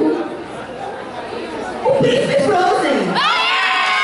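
Crowd chatter in a large hall, then about three seconds in a loud, very high-pitched excited scream that sweeps sharply upward and is held.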